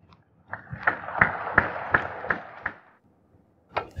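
A single click of snooker balls, then a short round of audience applause lasting about two seconds, with a few individual claps standing out at a steady pace.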